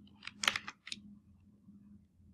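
A few keystrokes on a computer keyboard: about four short clicks in the first second.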